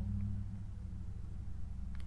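Steady low background hum with only a couple of faint ticks; no plastic crinkling to speak of.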